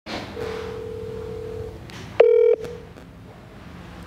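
Telephone line tones at the start of a phone call: one steady ringing tone lasting over a second, then a louder, shorter beep about two seconds in.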